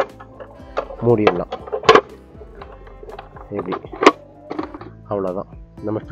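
A few sharp plastic clicks and knocks as the clear plastic cover of a hanging aquarium filter is handled and fitted onto the filter body, over steady background music with short bits of voice.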